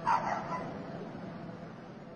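A dog barks once, a short yip, over a steady low drone and hiss.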